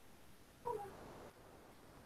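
A single short animal call about two-thirds of a second in, falling slightly in pitch, over faint room tone.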